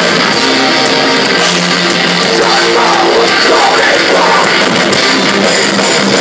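Metal band playing live: distorted electric guitars, bass and drum kit, loud and dense with sustained chords.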